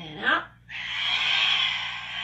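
A woman breathing out hard through her mouth, a long breathy whoosh lasting about two seconds, just after a short rising voiced sound as she lets the breath go.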